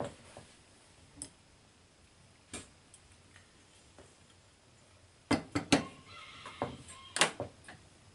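A quiet stretch with a few faint ticks, then a cluster of sharp, light clicks and taps from about five to seven and a half seconds in: small carburetor parts being handled on the workbench.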